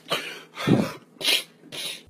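A man sobbing: four short, breathy sobs and gasps about half a second apart, the second the loudest.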